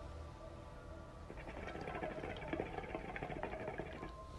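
Hookah water bubbling faintly as smoke is drawn through the hose, a rapid gurgle that starts about a second in, over a low steady hum.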